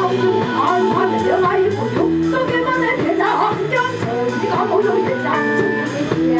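Live band music: a pansori-style pop song with a steady drum beat, bass and keyboards, and singing.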